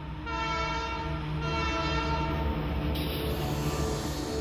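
Diesel locomotive air horn sounding two back-to-back blasts of about a second each, over the low steady rumble of the train.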